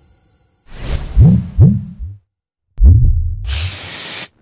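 Intro sound effects for an animated title sequence. A whoosh leads into two deep thuds in quick succession, like a heartbeat, each sweeping up in pitch. After a short gap comes a third deep thud, then a steady hiss lasting about a second.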